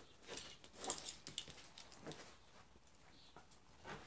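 Faint rustling and a scattering of light clicks as small metal items, a multi-tool and a watch, are picked up off a cloth sheet together with a folded bandana.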